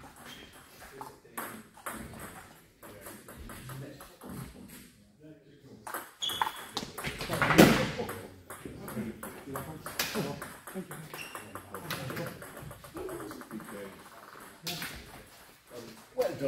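Table tennis ball clicking sharply off the table and rackets in irregular hits, with voices in a large hall; the loudest moment comes about halfway through.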